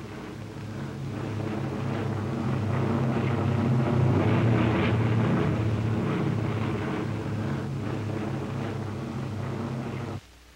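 Steady drone of propeller aircraft piston engines, starting suddenly, swelling over the first few seconds, then easing slightly.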